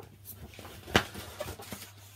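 Picture-book page being turned by hand: paper rustling with a sharp snap about a second in.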